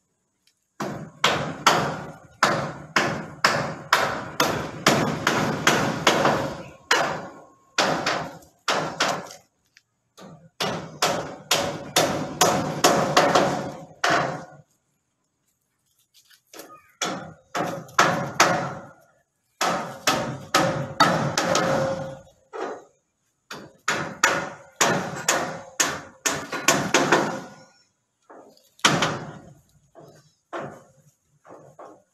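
Hammer blows in quick runs of a few strikes a second, each with a short ringing note, broken by brief pauses between runs.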